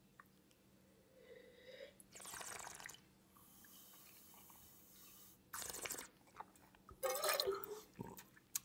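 A taster slurping and working a mouthful of red wine: a short slurp of air drawn through the wine, then faint swishing and breathing, with more short slurping sounds near the end.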